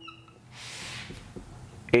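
Marker writing on a whiteboard: a short high squeak near the start, then a scratchy stroke lasting about half a second.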